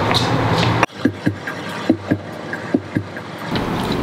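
A steady low hum that cuts off abruptly about a second in, followed by scattered light knocks and clicks.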